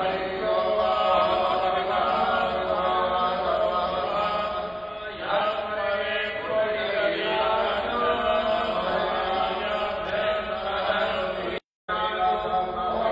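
Hindu puja mantras chanted continuously by a priest into a hand microphone. The sound cuts out for a moment near the end.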